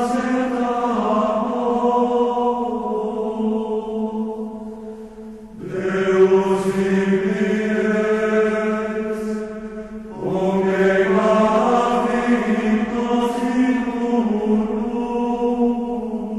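Voices singing a slow hymn in long held notes, in phrases of about five seconds with a short breath between them.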